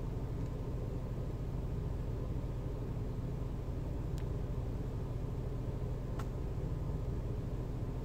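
Steady low rumble and hum of a car's cabin with the engine running, with two faint clicks about four and six seconds in.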